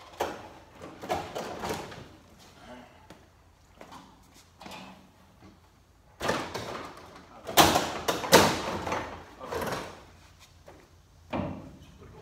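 Irregular knocks, clunks and rattles of a race car's removable front nose being worked loose by hand, the loudest pair a little past halfway through.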